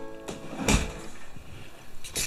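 A held tone fading out at the very start, then a single thud about two-thirds of a second in, followed by rustling handling noise.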